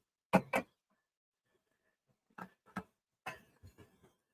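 Short knocks and clicks of craft supplies being handled and set down on a table: two sharp knocks close together about a third of a second in, then several softer ones in the second half.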